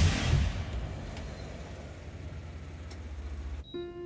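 Dramatic soundtrack music dying away into a low, steady rumbling drone that cuts off abruptly near the end, where soft, sad piano notes begin.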